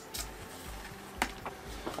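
A few faint light clicks and knocks of plastic being handled, as the squeeze bottle and bin are worked, over faint background music with a steady low beat.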